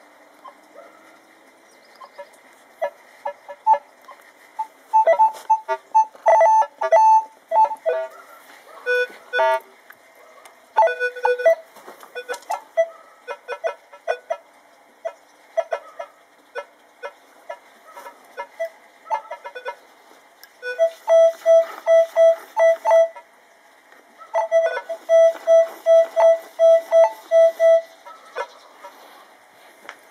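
Minelab E-Trac metal detector with a Detech Ultimate coil sounding its target tones as a krejcar (old kreuzer) coin is brought near the coil: short electronic beeps at a couple of different pitches, scattered at first, then in fast even runs of identical beeps, about three a second, over the last third.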